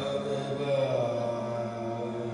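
Sikh kirtan in classical style: a singer holds and bends a long note over a steady harmonium drone.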